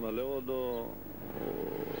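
A man speaking for about the first second, then about a second of rushing noise from a passing vehicle before the speech resumes.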